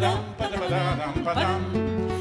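Acoustic guitar accompanying a voice singing the opening words of a Russian bard song.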